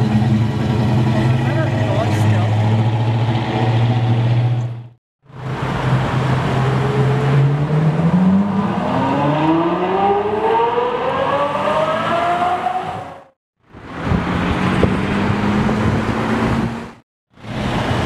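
Car engines in three edited-together passes: first a classic muscle car's engine running low and steady, then a Ferrari F12's V12 accelerating, its note rising smoothly over about five seconds, then another engine running steadily. Each pass cuts off abruptly.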